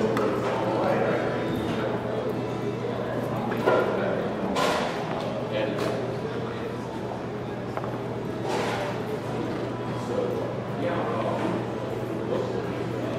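Indistinct voices in a large, echoing hall over a steady low hum, with a couple of brief knocks a few seconds in.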